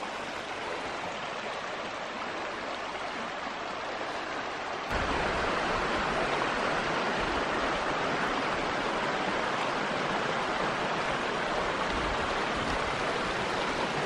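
Shallow mountain creek running over cobbles and stones, a steady rushing of water. About five seconds in it becomes louder and fuller.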